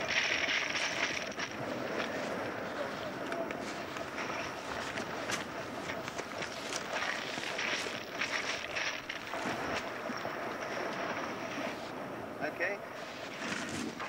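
Indistinct voices and rustling and handling noise as sea canoes are carried through long grass, over a steady hiss, with scattered small knocks.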